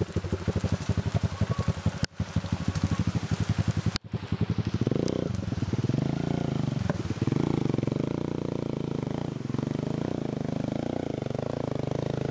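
Motorcycle engine pulling a loaded trailer through a muddy stream crossing: it chugs at low revs for the first few seconds, then revs rise and fall as the bike climbs out up the dirt slope. The sound drops out briefly twice early on.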